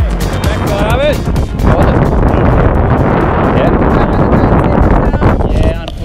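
Background music fading out over the first second or two. It gives way to loud wind buffeting the microphone, with faint voices now and then.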